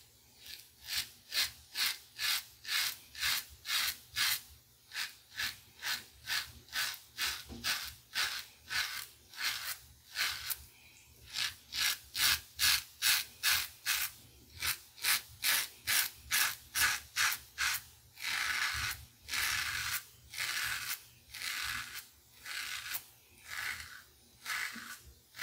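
Merkur 34C double-edge safety razor with a Voskhod blade cutting through two days' stubble under lather. It makes short rasping strokes at about two a second, and a few longer, slower strokes near the end.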